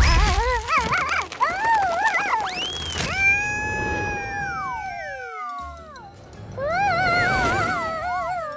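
Cartoon ant characters making wordless vocal sounds over background music: wavering, warbling calls, then a long held cry that slides down in pitch, and more wavering calls near the end.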